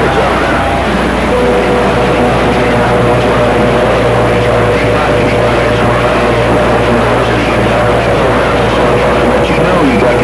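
CB radio speaker receiving long-distance skip: steady loud static with a low hum, and a steady heterodyne whistle that comes in about a second in, with no clear voice getting through.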